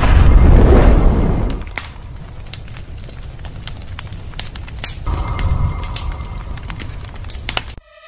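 Fire-and-explosion sound effect for an animated logo reveal: a deep rumbling boom for about the first second and a half, then scattered crackling of flames. A steady tone returns about five seconds in, and everything cuts off suddenly near the end.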